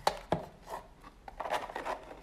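Small cardboard eyelash boxes with glitter paper covering being handled: two sharp knocks close together, then scraping and rubbing as the boxes slide against each other and against the hands.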